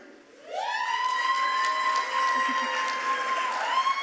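An audience member's long high 'woooo' cheer, sliding up and then held for about three seconds, dipping and rising again near the end, over applause from the crowd.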